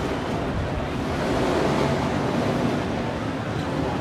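Steady outdoor rumble of motorcycle engines running in a street parade, mixed with crowd noise and wind on the microphone.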